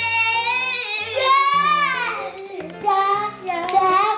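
A child's voice singing long, drawn-out notes that slide up and down, over backing music with steady low notes.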